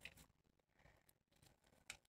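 Near silence, with two faint short ticks: one at the start and one near the end.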